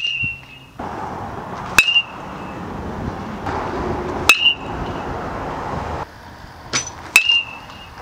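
Metal baseball bat striking pitched balls in batting practice: four sharp pings, each with a brief high ring, at the start, just before two seconds, just after four seconds and just after seven seconds, over a steady outdoor hiss.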